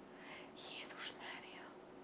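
Faint, breathy whispered voice sounds from a woman, with no full-voiced speech.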